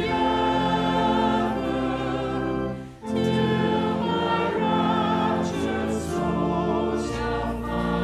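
Church choir singing a hymn in sustained, held notes over a steady low organ accompaniment, with a brief break between phrases about three seconds in.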